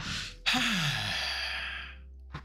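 A man's long sigh: a quick breath in, then a breathy exhale with his voice sliding down in pitch, fading out near the end.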